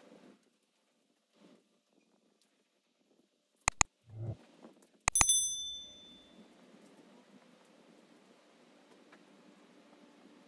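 Subscribe-button sound effect: two quick clicks, then another click and a bright bell ding that rings out and fades within about a second. Before it is near silence, after it a faint hiss.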